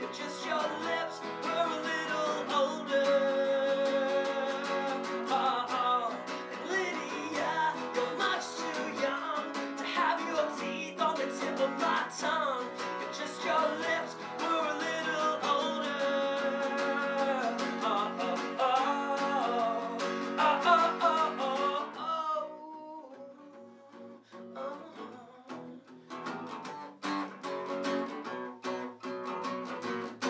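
A man singing over a strummed acoustic guitar in a live solo performance. About 22 seconds in the voice stops and the guitar plays on alone, more softly.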